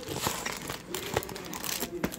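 Plastic wrapper of a Starburst Duos candy pack crinkling as it is handled, with irregular crackles and a sharp click about a second in.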